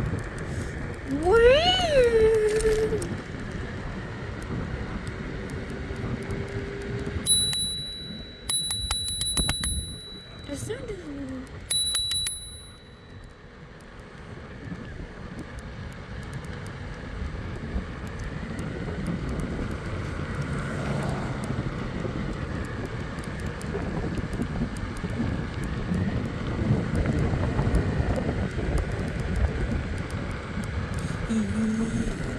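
Handlebar bell on a Hiboy electric scooter rung in three quick bursts of dings about a third of the way in, over the steady wind and rolling noise of the scooter in motion. A brief rising-and-falling vocal call comes near the start.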